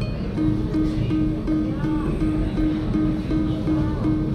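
Video keno machine drawing its numbers: one short tone repeating about three times a second, one for each number drawn. Casino machine music runs underneath.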